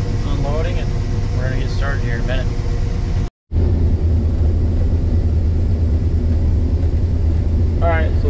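New Holland TR88 combine running, heard from inside the cab as a steady low drone. The sound drops out for a moment a little over three seconds in, then the drone resumes, heavier and more even.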